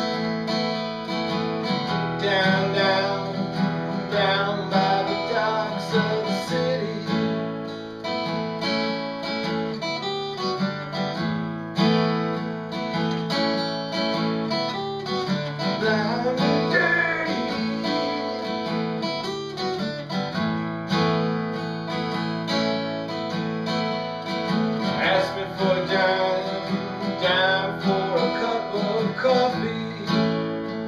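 Solo acoustic guitar, strummed and picked in an instrumental passage.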